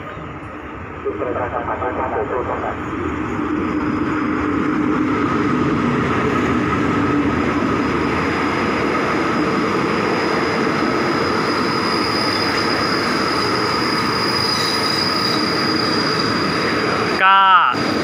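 A diesel-hauled passenger train arriving at a station: the locomotive comes up and passes, then the coaches roll slowly by with a steady rumble of wheels on rail. A thin high squeal from the wheels comes in during the second half as the train brakes into the station.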